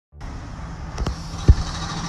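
Steady low rumble of nearby construction work with a faint hum, broken by a click about a second in and a louder knock half a second later as the phone is handled.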